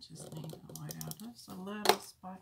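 A woman's voice murmuring low without clear words, over light clicks and taps from sticker sheets and paper being handled on a planner page; one sharp tap near the end is the loudest sound.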